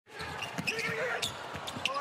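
A basketball being dribbled on a hardwood court, several short bounces.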